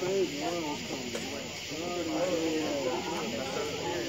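Indistinct chatter of several spectators' voices overlapping, over a steady background hiss.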